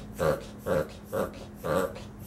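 Small dog in a fit brought on by its collapsed trachea, making the same short sound over and over in a steady rhythm, about two a second.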